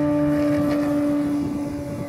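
Radio-controlled model airplane's motor and propeller running at takeoff power during its takeoff run and lift-off, a steady pitched drone that dips slightly near the end.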